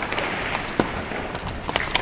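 Ice hockey sticks clacking against the puck and each other in a goalmouth scramble, with skate blades scraping the ice. There are sharp knocks about a second in and twice near the end.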